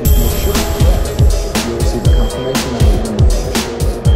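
Electronic house/techno track: a kick drum thumping about twice a second under held synthesizer tones from a Yamaha K5000, with hi-hat hits on top.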